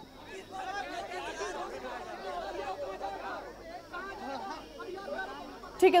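Indistinct chatter of several people talking over one another, quieter than the speech around it. A single clear voice cuts in just before the end.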